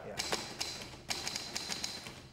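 Typewriter keys clacking in quick, irregular strokes, with a short pause about a second in.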